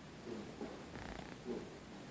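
Faint, indistinct murmuring of a low voice in short, soft bursts about every half second, too muffled to make out words.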